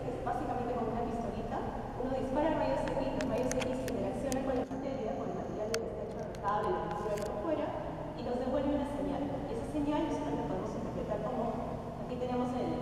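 A woman speaking: continuous lecture-style talk with no other sound standing out.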